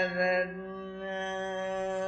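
Male Carnatic vocalist singing in raga Simhendramadhyamam: an ornamented phrase with wavering gamakas ends about half a second in, then he holds one long steady note over a steady drone.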